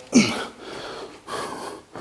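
A man's short falling vocal grunt, followed by two audible breaths.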